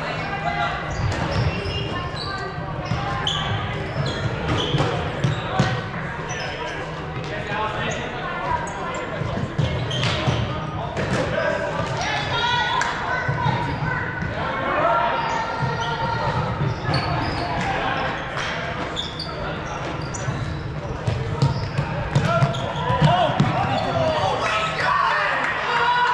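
Players' voices calling out across a large, echoing gymnasium, with sneakers squeaking and footsteps on the hardwood court.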